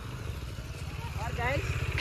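Motorcycle engine idling, a steady low pulsing.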